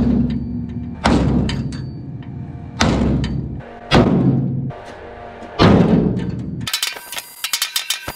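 Sledgehammer blows on the bent steel back door of a farm trailer, knocking a bow out of it. There are four heavy strikes a second or so apart, each ringing on after it, followed near the end by a quick rattle of clicks.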